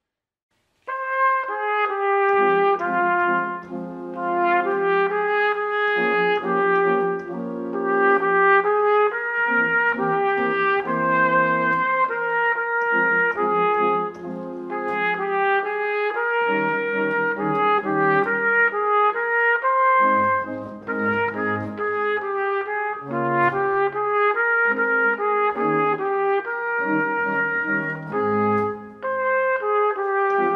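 Trumpet playing the melody of a classical aria over sustained pipe-organ chords, the music starting about a second in.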